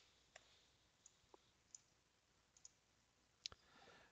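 Faint computer mouse clicks, about eight scattered over four seconds, some in quick pairs, over near silence.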